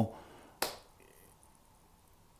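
A single sharp finger snap about half a second in.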